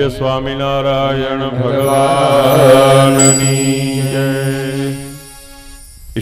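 A man's voice chanting one long held devotional note over the temple sound system, with musical accompaniment. It swells towards the middle and dies away about five seconds in.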